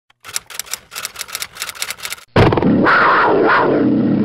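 Intro logo sound effects: a rapid run of sharp ticks, about six a second, for roughly two seconds, then a sudden loud, sustained sound-effect hit with a low tone and a swell in the middle.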